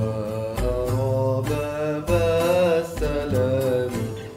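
A male voice singing long, ornamented vowel lines of an Arabic Sufi devotional song (inshad), over a low sustained backing and a recurring low beat.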